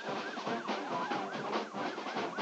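Marching band brass, trumpets and trombones, playing quick repeated rising-and-falling figures, about five a second, over sustained chords.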